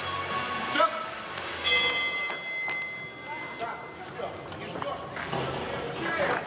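Ring bell struck a few times about two seconds in, its metallic ring fading over a couple of seconds: the signal for the round to begin. Music and voices in the hall run underneath.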